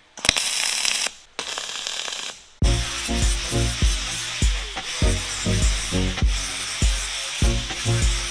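Two short MIG tack welds on a steel table leg, each a crackling hiss of about a second, one straight after the other. About two and a half seconds in, background music with a steady beat takes over.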